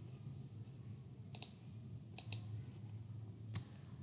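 A few short, sharp clicks at irregular spacing, four in all, with a faint low steady hum underneath. The clicks are of the kind made while operating a computer as the slides are moved on.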